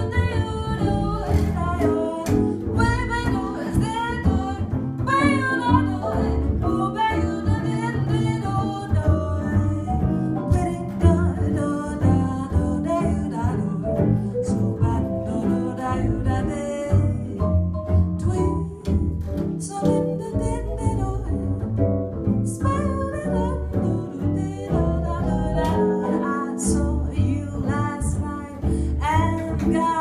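Live jazz quartet playing an instrumental passage, with upright double bass under archtop electric guitar and vibraphone.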